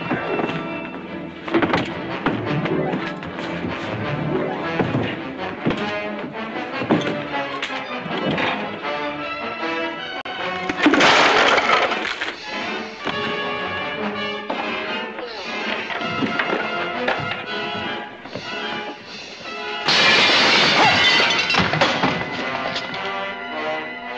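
Dramatic orchestral film score over a fistfight, with blows, thuds and furniture breaking. There are loud crashes about eleven seconds in and again about twenty seconds in.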